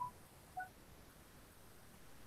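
Near silence with two brief, faint beep-like tones, about half a second apart.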